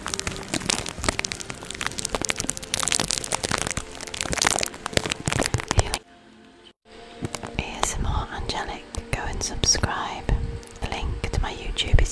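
Close-miked scratching and crackling of a fluffy makeup brush swept back and forth over a microphone grille. It stops abruptly about six seconds in, then resumes after a second, mixed with soft whispering.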